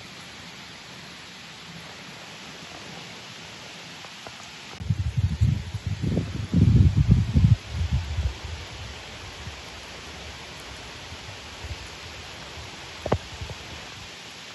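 Steady hiss of heavy rain falling on a pond and the trees around it. From about five seconds in, loud low rumbling bumps come and go for a few seconds, and a single sharp click sounds near the end.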